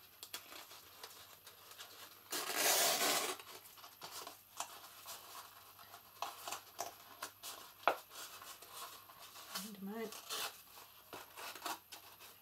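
Thin card and ribbon rustling as a ribbon is threaded through punched holes in a folded card box and pulled through, with one louder rustle about a second long a couple of seconds in and scattered small clicks and taps of the card being handled.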